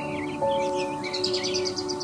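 Soft background music of held notes, with birds chirping over it. About halfway through, a bird gives a fast trill of repeated high notes.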